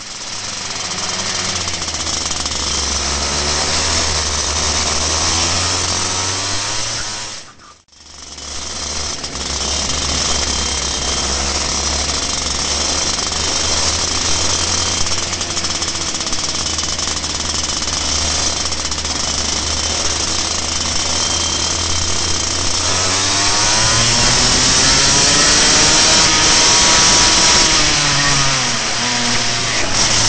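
Two-stroke racing kart engine running at race speed, close to a radiator-mounted onboard camera, its note rising and falling through the corners. A short break about eight seconds in, and from about 23 seconds in the engines of other karts running close alongside join it.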